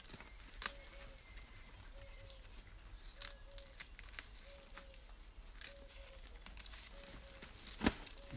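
Dry, papery outer leaves being peeled and torn off a leek stem by hand: faint scattered crackling and tearing, with a sharper click near the end.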